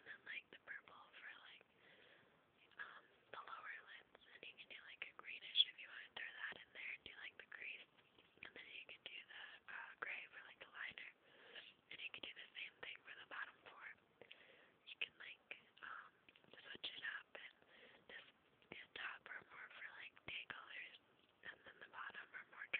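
A person whispering softly and continuously, in short breathy bursts without voiced tone.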